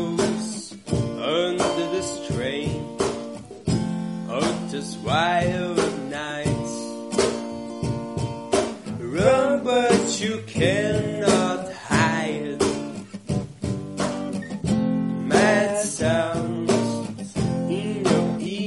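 Strummed acoustic guitar with a voice singing a wavering melody without words.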